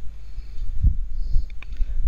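Low steady background hum with a soft thump just under a second in. Near the end there are a couple of faint computer-mouse clicks.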